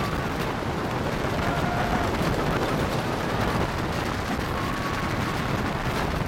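Wooden roller coaster train running at speed over its wooden track: a loud, steady rumble and rattle of the wheels on the track.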